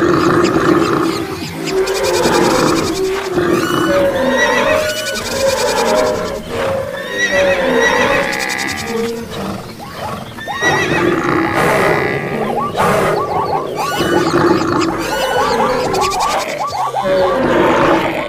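A jumble of overlapping animal calls, horse whinnies among them, over background music.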